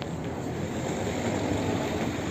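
Town street ambience: a steady rush of noise that swells a little near the end.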